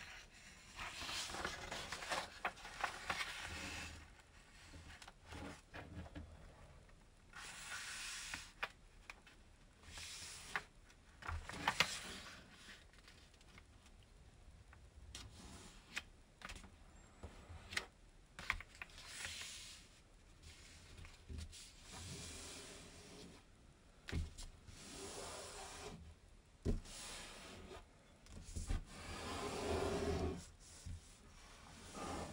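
Origami paper being handled and folded on a tabletop: repeated bursts of rustling as the sheet is slid, lifted and folded in half, with a few sharp clicks and taps as the crease is pressed down.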